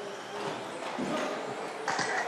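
Electric 1/10-scale 2WD buggies running on an indoor carpet track: a steady hiss of tyres and motors in a large hall, with a few light clacks and a sharper knock near the end.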